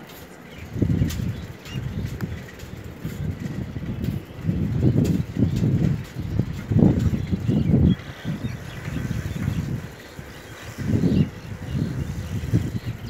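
Wind buffeting the microphone of a camera riding on a moving vehicle, in uneven low gusts that rise and fall every second or so, over road noise.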